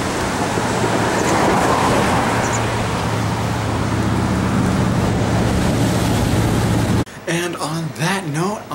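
Road traffic passing on a highway bridge: a loud, steady rush with a low engine hum that grows stronger over the last few seconds. It cuts off suddenly about seven seconds in, and a man's voice follows.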